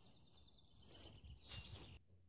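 Faint outdoor background: a low rumble and a steady high-pitched hiss, with no distinct sound event.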